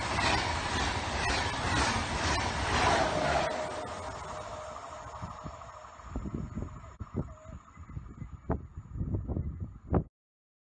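A TGV high-speed train passing close by at speed: a loud rush of wheel and air noise that fades away over the first five seconds or so as the train recedes. After that there are only irregular low gusts.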